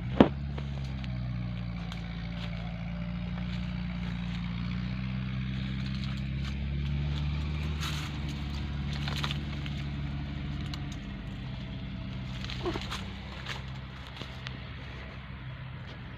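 A motor engine drones steadily, its pitch shifting slightly; it swells in the middle and drops away after about eleven seconds. A sharp knock comes right at the start, and a few lighter clicks follow.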